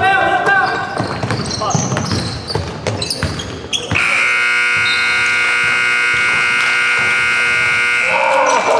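Basketball bouncing and shoes squeaking on a hardwood gym floor among players' voices. About four seconds in, the scoreboard horn sounds one long, steady blast: the end-of-game buzzer as the clock hits 0.0.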